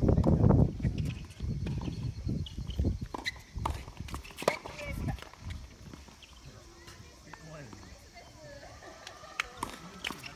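Outdoor tennis court between points: a low rumble in the first second or so, then scattered sharp ticks of tennis balls bouncing and players' footsteps, with indistinct voices. Near the end a racket strikes the ball as the next point starts.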